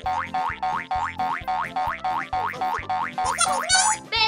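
A cartoon rising 'boing' sound effect repeated quickly, about three times a second, one for each drop of red food colouring counted into the pot. It ends near the end in a longer, higher rising sweep.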